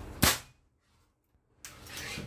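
A single shot from a Bengal X-Trabig PCP air rifle firing a 15-grain projectile during a chronograph velocity test: one sharp crack about a quarter second in that dies away within a fraction of a second. It reads about 1,000 on the chronograph.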